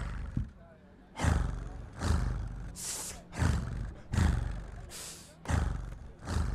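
Beatboxing into a microphone through a PA: a rhythm of low kick-like thumps and breathy hissed snare sounds, roughly one hit every three quarters of a second, laying down a beat.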